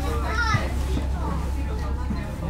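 Children's voices chattering and calling out inside a commuter train carriage, over the steady low rumble of the train.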